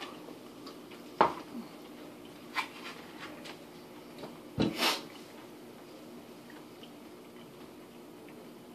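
Quiet mouth sounds of someone chewing a large spoonful of cheese-covered fries, with a sharp click about a second in and a few fainter clicks after it.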